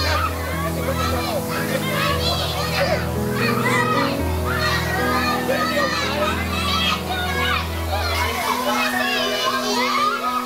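Many young children shouting and squealing excitedly while playing, over background music with slow, held bass notes.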